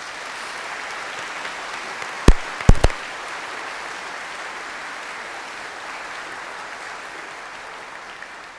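Audience applauding steadily, tailing off a little near the end. About two and a half seconds in, a quick cluster of three or four sharp knocks stands out as the loudest sound.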